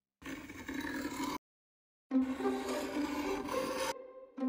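Butter knife slicing through kinetic sand in two passes: one lasting about a second, then, after a short break, another of about two seconds.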